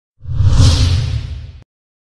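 Whoosh sound effect with a deep boom underneath, rising fast a moment in, then fading and cutting off suddenly after about a second and a half.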